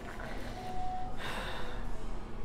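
A woman takes one sharp, noisy breath about a second in, her mouth burning from a Carolina Reaper pepper.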